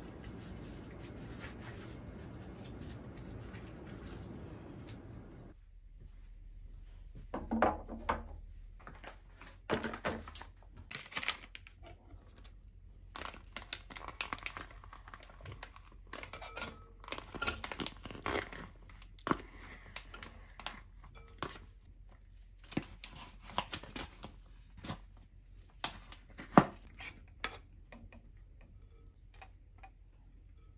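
A steady rustling, then from about five seconds in a run of irregular crinkles, taps and scrapes. The taps and scrapes come from plastic trays of ready-cooked rice being handled and their rice scraped out into a rice-cooker inner pot, then stirred with a plastic rice paddle.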